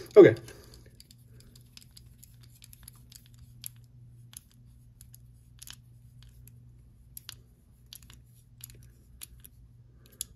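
Small bit driver turning a pocket-clip screw into a folding knife's handle: faint, scattered light metallic clicks and ticks, over a low steady hum.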